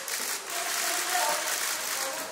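Crowd noise: steady applause with scattered voices calling out.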